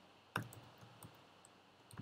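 A few faint computer keyboard keystrokes as a line of code is typed and corrected, the loudest about a third of a second in.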